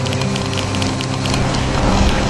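Soundtrack drone of steady sustained low tones under a dense crackling, hissing noise layer full of sharp clicks.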